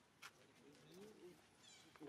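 Faint, soft rising-and-falling calls from a baby pig-tailed macaque, with a light click early on and a few faint high chirps near the end.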